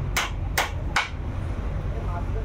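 Hammer blows on the idol's wooden framework, about two a second: three sharp knocks in the first second, then they stop.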